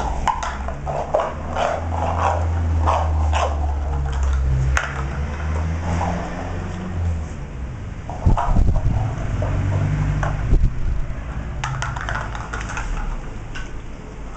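Beagle puppy making short play sounds, several a second, while playing with a plastic cup on a tile floor. A few louder thumps come about eight to eleven seconds in.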